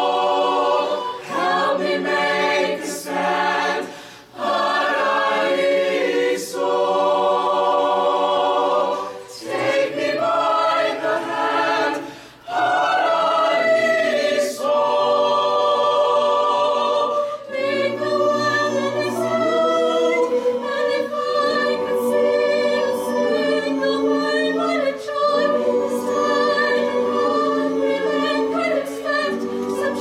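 Mixed-voice chamber choir singing held chords, with brief dips about four and twelve seconds in.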